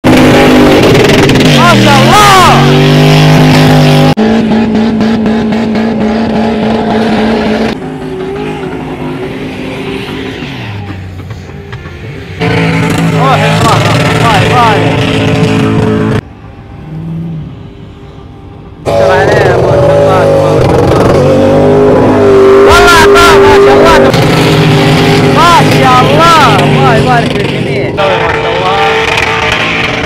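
Four-wheel-drive engines revving hard under full load as off-road trucks climb a sand dune, in several short clips joined with sudden cuts. Pitch rises and falls with the throttle, and voices shout at times.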